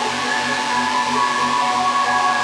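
Techno DJ mix: a steady bass pulse about twice a second under held high synth tones and a hiss of noise.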